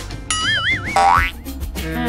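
Cartoon sound effects over light background music: a wobbling, wavering tone about a third of a second in, followed by a quick rising whistle-like glide at about a second.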